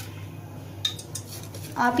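A few light metallic clinks against a stainless-steel bowl about a second in, one of them briefly ringing, as chopped green chilli seeds are scraped off a plate into the bowl. A low steady hum runs underneath.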